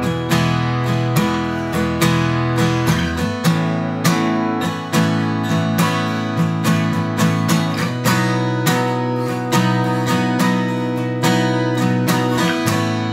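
Taylor cutaway acoustic guitar strummed in a steady rhythmic pattern, starting on an E chord with the deep open low string ringing. A little over three seconds in, that bass note drops out as the chord shape moves up the neck to the next chord of the exercise.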